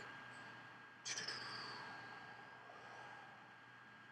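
Faint room tone with a thin steady whine. About a second in, a soft hiss starts suddenly and fades away over a second or so.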